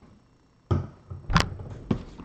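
Hand handling a sealed trading-card box at a stack on a table: three knocks, the first a little under a second in, the loudest about halfway and the last near the end.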